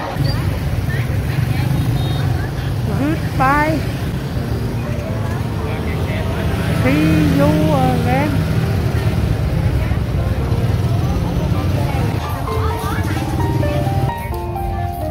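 Busy street and market background: a steady low rumble of motorbike traffic, with a few short sliding voice calls. Music comes in near the end.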